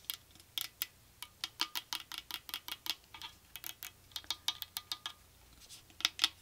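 Long acrylic fingernails tapping on a hard, hollow light-up pumpkin figurine, ASMR-style: quick, irregular clicking taps, several a second.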